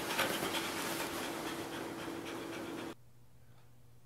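A dog panting, which cuts off suddenly about three seconds in.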